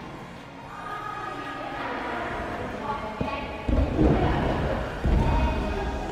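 Dull thuds of a young gymnast's hands and feet landing on a padded floor mat during a cartwheel, in two groups about four and five seconds in.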